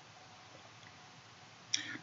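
Quiet room tone in a pause between a man's sentences, with a few faint mouth clicks and a short intake of breath near the end.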